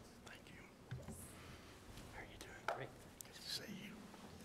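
Faint whispered talk near a lectern microphone, broken by a few light clicks.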